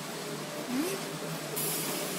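Automatic corrugated-carton folder-gluer running, a steady mechanical hum and whir as cardboard blanks feed through, with a high hiss coming in near the end.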